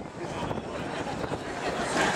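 Open-air crowd ambience: a steady rush of wind on the microphone under faint, indistinct voices.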